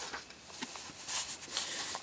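Faint rustling of a hand-held printed paper sheet, a few soft brushes over low background hiss.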